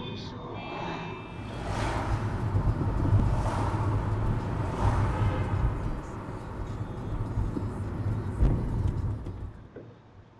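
Road noise inside a moving car, heard through a dashcam: a steady low rumble of tyres and engine with a hiss of air. It fades near the end.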